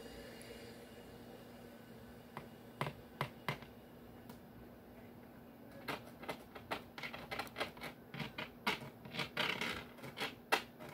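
Light clicks and taps, a few scattered at first, then coming quickly and irregularly from about six seconds in, over a steady low hum.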